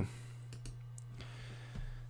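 A few faint computer mouse clicks over a steady low hum.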